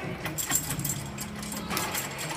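Metallic clicking and jingling from still rings' straps, cables and fittings as a gymnast swings on them: a few sharp clicks over a steady low hum.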